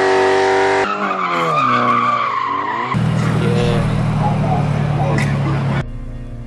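A car engine revving hard with tyre squeal. It is held at high revs at first, then swings up and down, and after about three seconds gives way to a lower, steady engine rumble that cuts off abruptly near the end.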